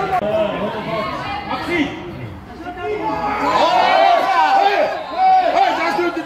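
Spectators' voices talking over one another close to the microphone, indistinct chatter with a brief lull partway through.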